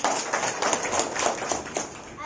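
A roomful of children clapping in a short burst of applause that starts suddenly and dies away near the end.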